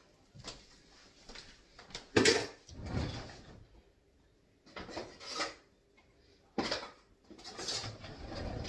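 Kitchen drawer being opened and shut with cutlery rattling inside as someone looks for a knife: a run of separate knocks and clatters, the loudest about two seconds in.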